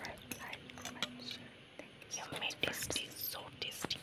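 Close-miked soft whispering and mouth sounds with many short, sharp clicks, from someone eating instant noodles with a fork.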